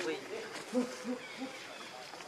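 Outdoor animal calls: a series of three short, low hooting notes in quick succession about a second in, with scattered faint high chirps around them.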